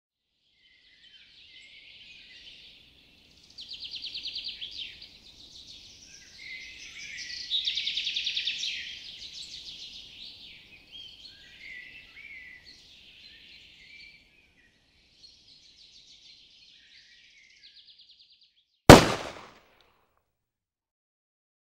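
Woodland songbirds singing, with fast trills and chirps, then near the end a single loud gunshot that dies away within about half a second.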